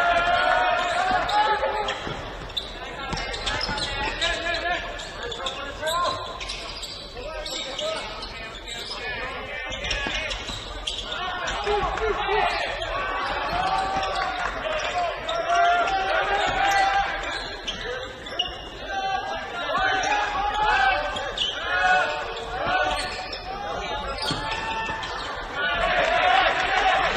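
Basketball dribbling and bouncing on a hardwood gym floor, with players' and spectators' shouts echoing in a large hall.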